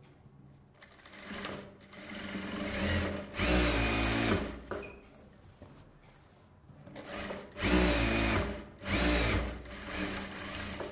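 Industrial single-needle lockstitch sewing machine stitching silk blouse fabric in short runs. One run builds to its loudest a little before the middle, then after a pause of a few seconds two quick runs come close together near the end. The motor's pitch rises and falls within each run.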